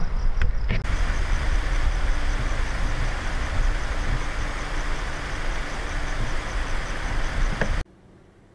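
Steady rumble of a motor vehicle running close by, cutting off abruptly near the end.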